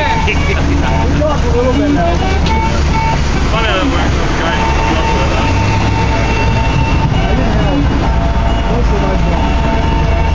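Tracked excavator's diesel engine running steadily at idle: a constant low rumble with a steady tone above it. Brief voice-like sounds come and go over it.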